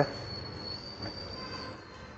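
Room tone with a thin, steady high-pitched whine.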